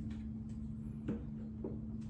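A steady low hum with two faint clicks, one about a second in and one shortly after.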